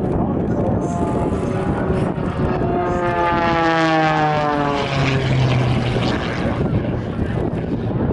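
Red Bull Air Race plane's six-cylinder Lycoming engine and propeller making a low, fast pass. The buzz swells to its loudest about four seconds in and drops steeply in pitch as the plane goes by.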